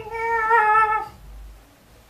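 A person singing a long, high, wavering note in a cat-like wail. It slides down and stops about a second in, leaving only faint room sound.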